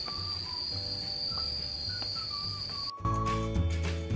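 A steady, high-pitched insect drone with soft background music under it. About three seconds in, the insect sound cuts off abruptly and the music gets louder.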